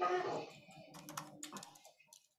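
Typing on a computer keyboard: a run of irregular keystroke clicks, following a brief louder sound at the very start.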